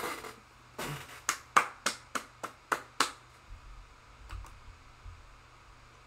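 A run of about eight sharp, unevenly spaced clicks or snaps over two seconds, starting about a second in, then a few fainter taps.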